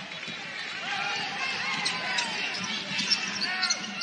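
Basketball game sound from the arena floor: a ball being dribbled on the hardwood court over a steady murmur of crowd and voices.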